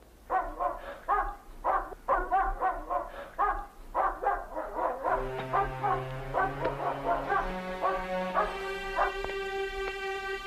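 A dog barking over and over, about two barks a second. Soft string music comes in about halfway and grows fuller towards the end.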